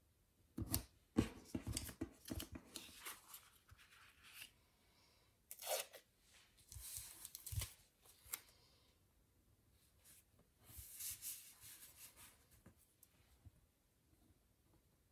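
Paper stickers and sticker sheets rustling and being peeled off their backing, in several short bursts with quiet gaps between.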